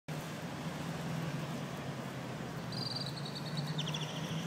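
Road traffic passing on a street, a steady rush with a constant low hum. A high-pitched, rapidly pulsing chirping trill starts near the end.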